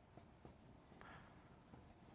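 Dry-erase marker writing on a whiteboard: a faint run of short squeaky strokes and light taps as letters are drawn.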